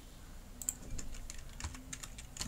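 Computer keyboard keys being pressed while editing text: a run of quick, irregular clicks beginning about half a second in.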